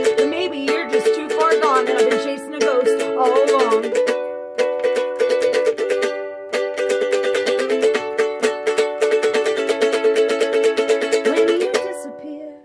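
Ukulele strummed in quick, even strokes, with a voice singing over the first few seconds before the playing carries on alone.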